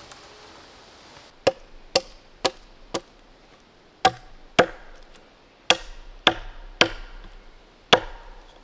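Axe blows chopping into a wooden pole: about ten sharp strikes, roughly half a second apart, in short runs of four, two, three and one.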